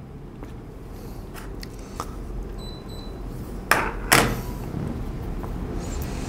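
Computer mouse clicks: a few faint ones, then two louder clicks half a second apart about two-thirds of the way in, over a low steady room hum.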